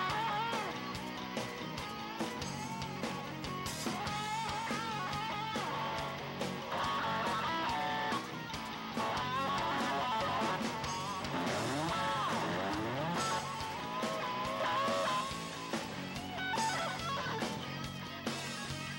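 Hard rock band playing live: an electric guitar lead line with bent notes and sliding pitch sweeps over drums and bass.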